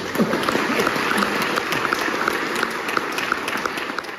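Audience applauding, a dense steady clapping with a few voices in the crowd near the start.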